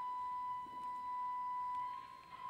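Church organ playing a hymn introduction, holding one high, steady note that was reached by a short upward step just before.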